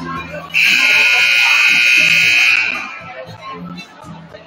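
Basketball scoreboard horn sounding one loud, steady blast of about two seconds, starting suddenly about half a second in, over crowd chatter in the gym.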